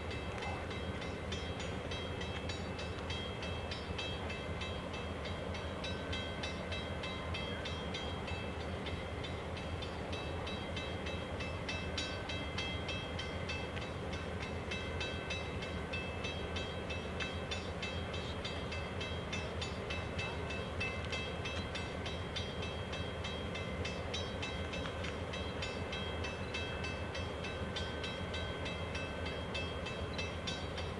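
Diesel passenger locomotive standing and idling, a steady low engine hum that neither rises nor falls. Over it runs a fast, regular high ringing, about three or four strokes a second.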